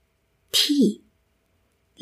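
Speech only: a single spoken Thai word, 'thîi' (ที่), with a breathy start and a falling pitch.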